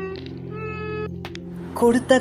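A girl singing in a high voice: a few short held notes, then louder singing starting near the end.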